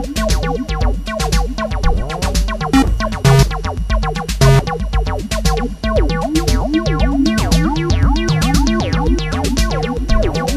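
Acid techno track: a repeating synth bassline of short notes that glide and bend in pitch, the 303-style acid line the track is built on, over a steady drum-machine beat of kick drum and hi-hats.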